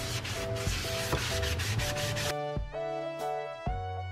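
Soapy cloth scrubbing the worn enamel of an old kitchen sink, a steady rough rubbing that stops a little over two seconds in. Soft background music plays throughout.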